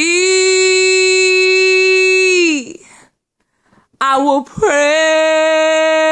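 A woman singing a worship song a cappella: one long held note that bends up slightly as it begins and fades after about two and a half seconds, then, after a pause of about a second, another long held note.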